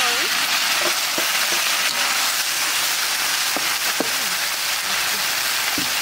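Canned fish in tomato sauce poured into hot oil and fried garlic in a wok, setting off a loud, steady sizzle that starts suddenly as it goes in.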